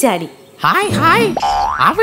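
Animated cartoon character's voice with wide swings in pitch, followed by a rising cartoon sound effect near the end.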